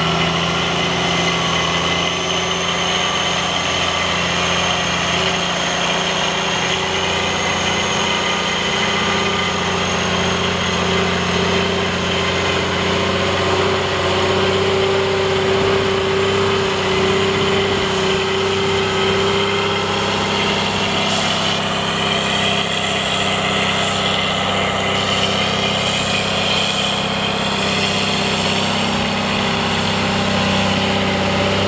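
Cummins M11 10.8-litre inline-six diesel of a 1997 Ford LT9513 semi tractor running steadily as the truck drives slowly.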